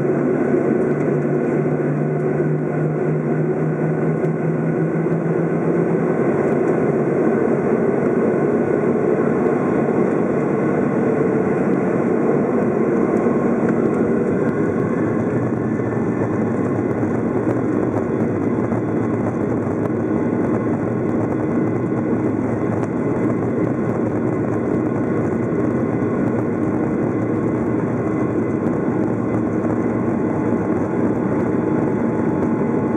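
Boeing 737-800's CFM56-7B turbofan engines running steadily at taxi power, heard inside the cabin from a seat over the wing: an even hum and rush. A low steady tone in the hum stops about six seconds in.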